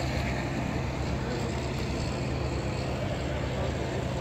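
A steady low mechanical hum, like an engine running continuously, with a constant even noise over it.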